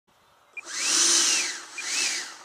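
90 mm electric ducted fan of a model Stinger jet spooling up and back down on the ground, a rising-then-falling whine over a loud hiss, with a second run-up starting near the end. A short high beep comes just before each rise.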